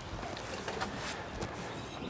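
A few faint light clicks and scuffs as a large portable fridge is pushed a little farther across a hatchback's cargo floor, over a low steady background rumble.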